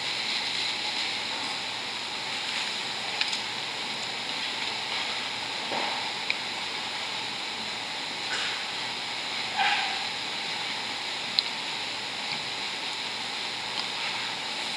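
Steady hiss of room tone in a quiet church, with a few faint clicks and small knocks scattered through it.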